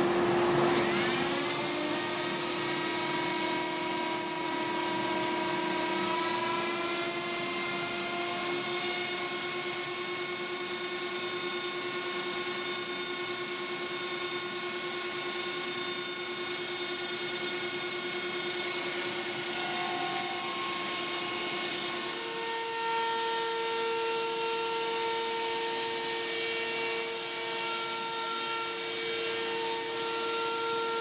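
Compact router on a CNC gantry spinning up to speed with a rising whine, over the steady drone of a dust collector. About two-thirds of the way through, the tone changes as the wide surfacing bit starts moving and cutting across the MDF table-top.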